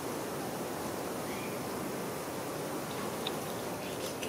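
Steady hiss of background noise, with a faint short high chirp about a second in.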